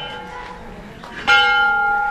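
A temple bell struck once about a second in, its clear metallic tone ringing on and slowly fading. The fainter ring of an earlier strike still hangs before it.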